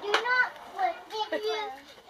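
Young children talking and playing, with short bursts of high-pitched chatter.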